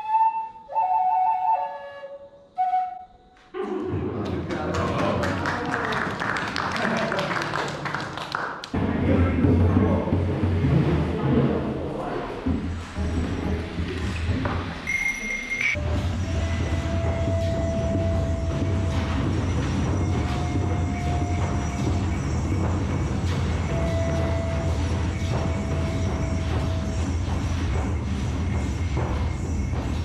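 A short run of notes on a small handmade pipe, then, after a cut, hand drums played steadily in a group, with a pan flute holding a few long notes over them.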